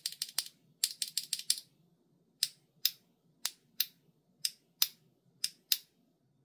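A loose LEOBOG Graywood V4 linear keyboard switch with an all-POM housing being pressed between the fingers, its stem clacking crisp and clear. A quick run of presses in the first second and a half is followed by single presses about every half second.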